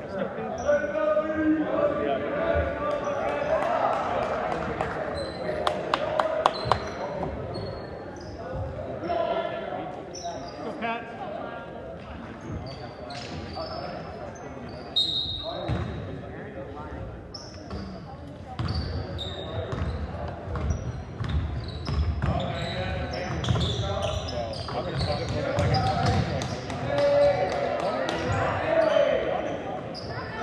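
Basketball game in a gymnasium: a ball bouncing on a hardwood court and sneakers giving short high squeaks, echoing in the large hall over players' calls and spectator chatter.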